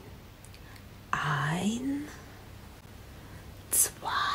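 A woman speaking softly in a breathy, near-whispered voice: one drawn-out sound rising in pitch about a second in and a short hiss near the end, over a low steady hum.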